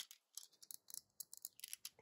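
Faint, scattered clicks of a small plastic Transformers minibot figure's parts being folded out and snapped into place by hand.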